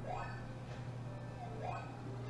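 Quiet room with a steady low hum and two faint, brief sounds, one at the start and one near the end.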